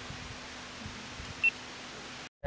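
Steady low hiss of a quiet background, broken about one and a half seconds in by a single very short, high-pitched chirp.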